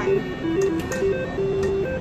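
Three-reel penny slot machine playing its electronic spin tune while the reels turn: a string of short, single beeping notes stepping up and down in pitch.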